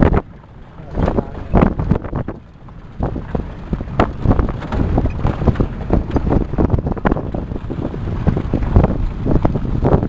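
Vehicle driving along a rough gravel mountain road: a steady low rumble with wind buffeting the microphone and frequent irregular knocks and rattles as it runs over the bumps.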